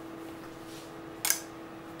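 A kitchen knife's steel blade snapping onto a Lidl magnetic knife strip, one sharp metallic click about a second and a quarter in, as the magnet grabs and holds it. A faint steady hum lies under it.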